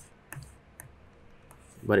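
A few short, sharp clicks of a computer mouse, then a man's voice starting near the end.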